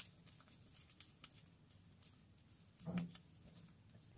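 Faint, scattered light clicks of metal circular knitting needles as stitches are worked by hand.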